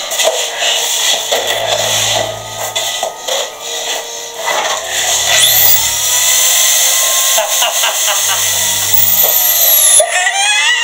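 Corded electric drill run up: its motor whine climbs steeply about five seconds in and holds for a few seconds before it falls away.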